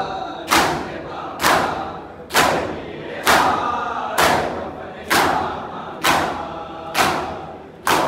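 Large group of men doing matam, striking their bare chests with open hands in unison: about nine loud, sharp strokes a little under a second apart, with many male voices chanting between the strokes.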